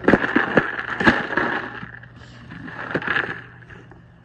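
A cardboard box being batted by a dog's paw and knocked and scraped across rough pebbled concrete: several quick knocks and scrapes in the first second, then another burst of scraping about three seconds in.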